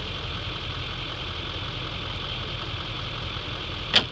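Pickup truck engine idling steadily, a low even rumble with a steady high hiss over it. A single sharp click near the end.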